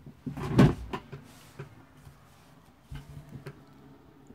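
Handling noise: knocks and paper rustling as a spiral notebook and loose sheets are moved about, loudest about half a second in, followed by a few light clicks around three seconds in.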